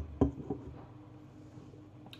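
A stemmed beer chalice set down on a kitchen worktop: two sharp knocks about a quarter-second apart and a fainter third just after.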